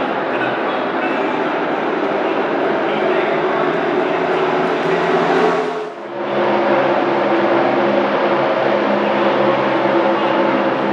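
A pack of NASCAR Cup Series stock cars' V8 engines running at racing speed, a continuous loud drone of many engines passing together on the track. The sound drops briefly about six seconds in, then the drone resumes.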